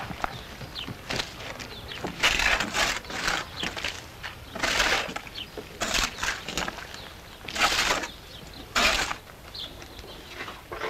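Manual work with clay mortar and straw: a series of short, irregular scraping and rustling noises, roughly one a second, with a few faint bird chirps.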